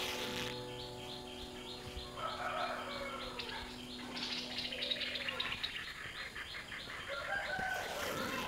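Birds chirping, a short high call repeated about three times a second and then thicker chirping, with a chicken or rooster calling a couple of seconds in. A held piano chord from background music fades out by about halfway through.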